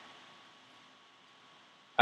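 Near silence: faint, steady room hiss with a faint hum.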